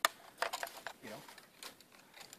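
Handling noise from a Norinco M14 rifle being swung and shouldered: a sharp click right at the start, then a few lighter clicks and knocks from the rifle and its sling.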